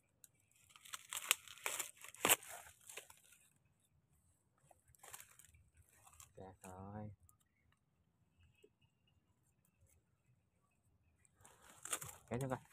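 Crackling, crunching rustle of dry coconut palm fronds and a coconut bunch being pushed aside and handled, with a few sharp snaps in the first three seconds. A short murmur of a voice comes about six and a half seconds in.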